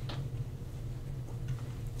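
Room tone during a pause: a steady low hum, with a faint click near the start.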